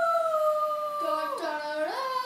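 A girl singing in long, drawn-out howl-like notes: a high note held for about a second, dropping lower about halfway through, then gliding back up near the end.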